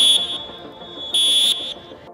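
Referee's whistle blown in two short, steady, high-pitched blasts. The first ends just after the start, and the second comes about a second later.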